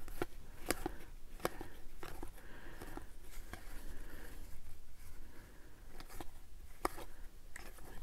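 Faint flicks and soft clicks of a stack of baseball trading cards being flipped through by hand, one card at a time slid from the front of the stack to the back, at irregular intervals.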